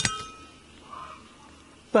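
A single sharp metallic clang with a short ringing tail as a steel-bladed hand trowel is dropped down.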